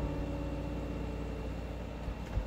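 The last acoustic guitar chord ringing out and slowly fading away over a low rumble of background noise.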